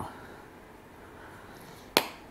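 Quiet room with a small glass spice jar of paprika being shaken over a ceramic mixing bowl, and one sharp click just before the end.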